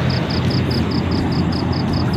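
Steady low rumbling outdoor noise, with a high-pitched chirp pulsing evenly about five times a second.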